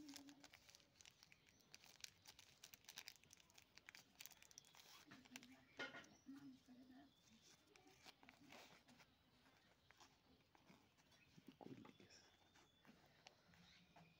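Faint crinkling and rustling of a KitKat bar's outer wrapper and inner foil being peeled open by hand, with small irregular crackles throughout.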